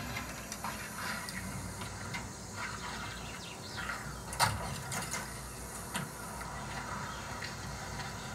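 Film soundtrack played through a television's speakers: scattered mechanical clicks and knocks over a low steady hum as a car pulls up at a filling station, the sharpest click about four and a half seconds in.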